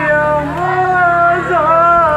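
A woman's mournful vocal lament: long, drawn-out held notes that slide up and down in pitch, a keening cry of grief over the dead.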